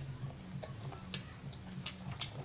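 Crisp crunching of raw green mango slices being chewed: a few sharp, irregularly spaced clicks over a steady low hum.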